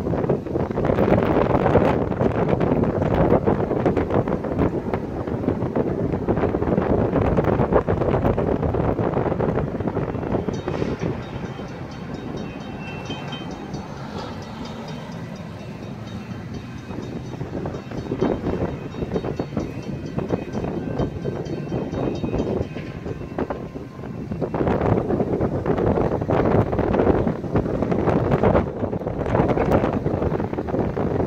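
Gusty wind buffeting the microphone, louder at first, easing off through the middle and picking up again near the end. A faint, steady high ringing sits underneath through the middle stretch.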